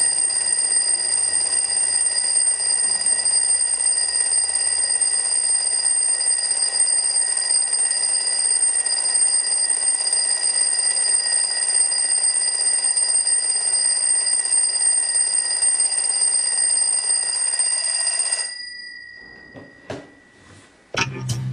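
Twin-bell mechanical alarm clock ringing loudly and without a break, until it is shut off abruptly near the end, the bell tone dying away briefly.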